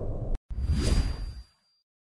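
Whoosh sound effects for an animated title card. One whoosh ends, there is a brief dead gap, then a second swoosh swells and fades out about a second and a half in.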